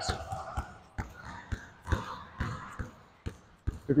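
A basketball bouncing on an indoor court floor in a steady dribble, about two bounces a second, as a behind-the-back dribble is worked backwards.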